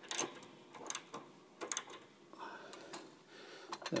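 A few scattered, sharp clicks from a ratchet wrench on a piano tuning pin, turning the pin to coil new string wire onto it.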